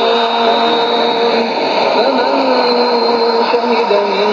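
Qur'anic recitation heard over a shortwave AM broadcast: one voice chanting in long, slowly bending held notes under steady hiss and static.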